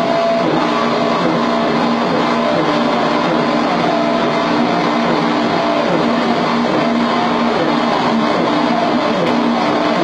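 Live experimental electronic noise music: a dense, unbroken wall of noise at constant loudness, with low held drone tones and many small sliding pitches woven through it.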